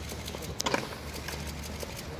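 Footsteps of a group of people walking on a paved walkway: a quick, steady patter of shoe steps. A short, sharp sound about half a second in is the loudest moment.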